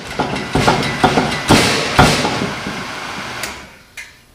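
Pro-Cut on-car brake lathe running on a wrongly mounted hub adapter, with loud metallic rattling and irregular clunks and grinding that die away near the end. The adapter's guide pin is not seated in the nose-cone guide hole, leaving a gap, so the lathe's mounting surface is knocking and being gouged.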